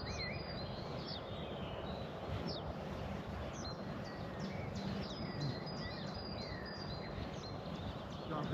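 Songbirds chirping and calling, many short rising and falling notes, over a steady outdoor background rumble.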